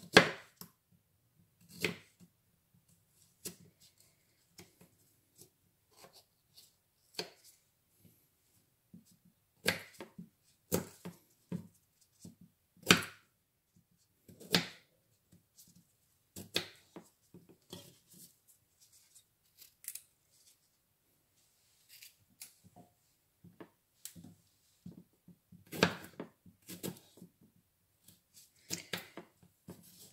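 Kitchen knife slicing radishes on a wooden cutting board: irregular sharp knocks of the blade striking the board, about one every second or two.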